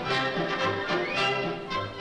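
Orchestral film-score music with strings, low notes recurring at an even pace.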